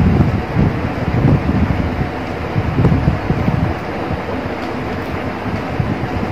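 Steady rushing air noise with uneven low buffeting on the microphone.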